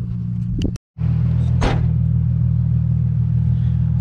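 A steady low rumble, broken by a brief dropout about a second in, with one short rising sweep soon after.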